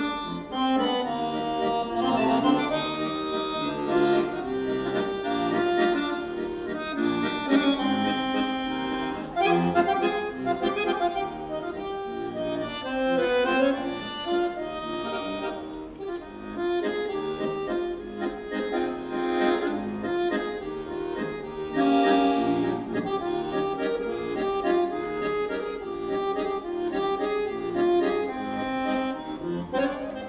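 Solo button accordion playing continuously, sustained reedy chords under a moving melody line.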